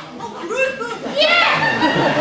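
Voices in a theatre: a short spoken exchange, then from about one and a half seconds in a growing clamour of many voices, with children in the audience calling out.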